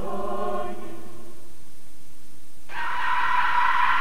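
A chanting choir held on sustained chords over a low drone, in the style of a dark horror-film score, fading out a little over a second in. About three-quarters of the way through, a sudden harsh, high, sustained sound cuts in.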